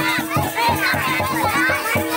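Panthi folk dance music with a drumbeat of about three strokes a second and a held low tone, mixed with voices and children's chatter from the crowd.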